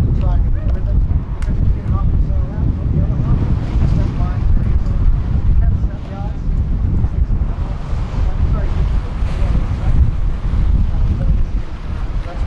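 Wind blowing across the microphone, a loud uneven low rumble that rises and falls in gusts, with faint voices of people nearby mixed in.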